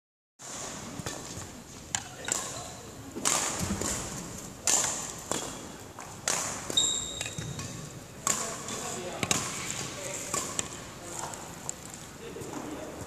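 Badminton rally: sharp racket-on-shuttlecock hits every second or two, each echoing in a large hall, with a short high squeak about seven seconds in.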